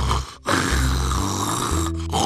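A cartoon snoring sound effect: one long, drawn-out snore starting about half a second in, over background music.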